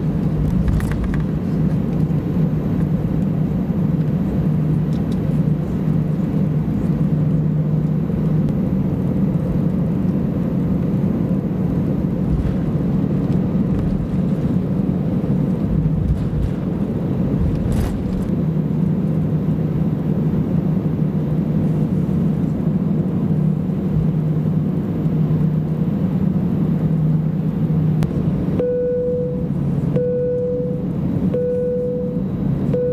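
Cabin of an Airbus A320-200 taxiing: a steady low hum and rumble from the jet engines and rolling gear. Near the end a cabin chime sounds, the first of a series of four chimes.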